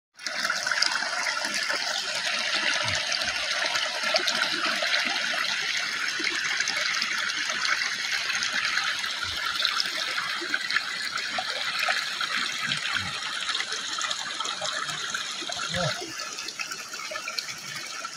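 A small stream running steadily over rocks, an even rushing of water.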